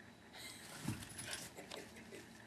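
Two small dogs, a West Highland white terrier and a Wauzer, moving about at play on carpet: faint rustling and scuffing with small clicks, and a brief low sound about a second in.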